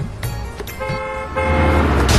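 A car horn sounds for about a second, starting a little under a second in, over music with a beat. A louder rushing noise builds up underneath it near the end.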